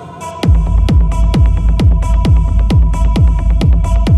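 Techno track in a DJ mix: after a quieter build, a heavy kick drum drops in about half a second in and keeps a steady four-to-the-floor beat of about two kicks a second, with a sustained synth tone and short hi-hat ticks between the kicks.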